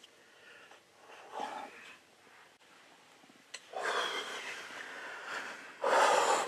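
A hunter's breathing in the adrenaline rush after shooting a bear: quiet at first, then a long breathy exhale through the second half, with a sharp click just before it.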